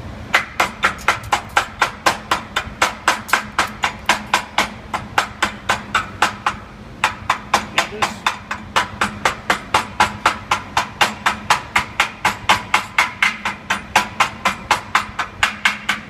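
Welder's chipping hammer striking a freshly run fillet weld on a steel T-joint, knocking off the slag. Rapid, ringing metallic taps come about three or four a second, with a brief pause about halfway through, over a steady low hum.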